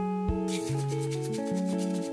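A bamboo matcha whisk (chasen) whisked quickly through matcha in a ceramic bowl, a fast regular scratching of many short strokes that starts about half a second in. Guitar music plays underneath.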